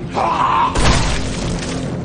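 A single pistol shot about three quarters of a second in, with a sharp crash after it, over a dramatic music score.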